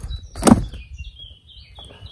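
A disc golf disc slid into a bag: one brief swish about half a second in, the loudest sound. Faint high bird chirps follow.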